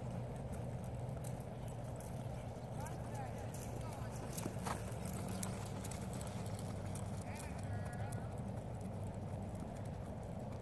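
Hoofbeats of a horse loping on arena sand.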